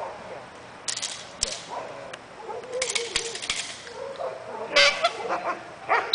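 A protection-trained dog biting and grappling with a decoy in a padded bite suit: scattered sharp cracks and short nasal cries, with a louder burst of cracks and cries about five seconds in.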